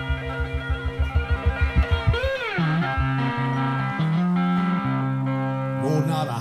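Cigar box guitar playing an instrumental blues passage: rapid repeated low notes, about eight a second, for the first couple of seconds, a note bent up and back down, then a slower run of low notes.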